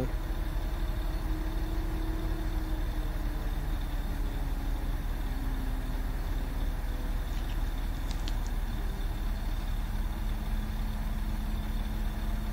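An engine running steadily at idle: a low, even drone with a faint hum over it that drops slightly in pitch partway through.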